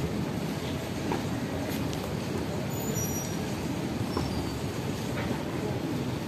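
Steady low outdoor background rumble with a few faint light taps scattered through it.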